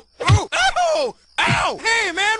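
A cartoon character's voice groaning and crying out in pain, a string of short moans that rise and fall in pitch, with a brief pause in the middle.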